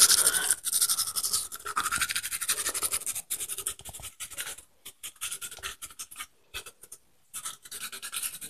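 A toothbrush scrubbing teeth in quick back-and-forth strokes. The strokes come thick and fast at first, then thin out to scattered strokes with short silent gaps in the second half.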